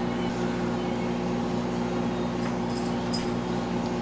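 Steady low hum of room tone, several fixed pitches held without change, with a few faint soft ticks about two and a half to three seconds in.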